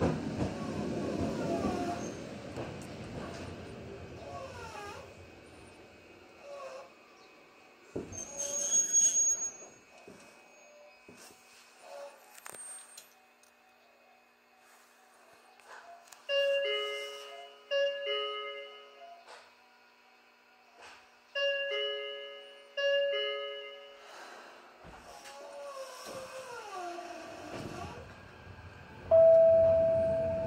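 Electric commuter train's running noise fading as it slows to a stop, with a short hiss of air about eight seconds in. A two-note descending ding-dong door chime then sounds four times, in two pairs a few seconds apart, as the doors open and close at the station.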